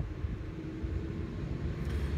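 Steady low background rumble with a faint steady hum running through it.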